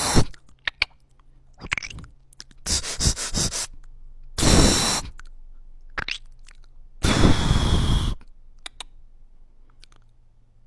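Beatboxer making mouth sound effects close into a handheld microphone: three loud hissing bursts of under a second each, the first one pulsing, with sharp lip clicks and pops between them.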